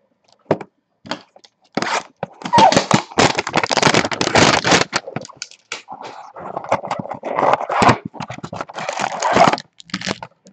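Cellophane-wrapped trading-card hanger boxes and their cardboard carton being handled: plastic wrap crinkling and cardboard rustling and scraping. A few short clicks come first, then busy crinkling from about two seconds in, loudest between two and five seconds.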